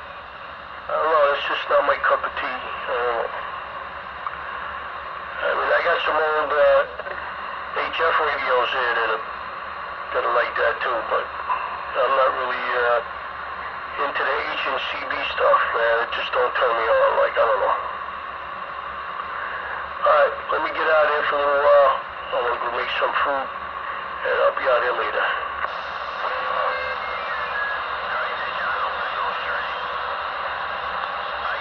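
Voices talking back and forth over a CB radio speaker: thin and narrow in tone, with a steady hiss of static under them.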